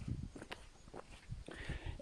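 Faint footsteps on a paved road, a few soft irregular steps over quiet outdoor background.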